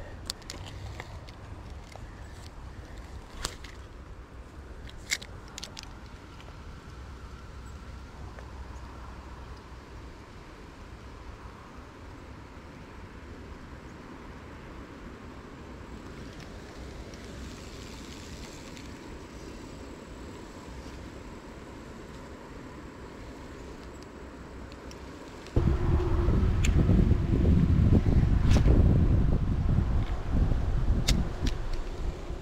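Quiet outdoor background with a few faint clicks, then, about four seconds before the end, a sudden loud rush of wind buffeting the microphone.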